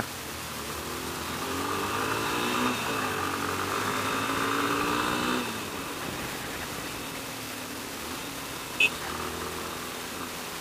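Yamaha XTZ 250 Ténéré's single-cylinder engine accelerating, rising in pitch and getting louder for about five seconds, then falling back and running on steadily.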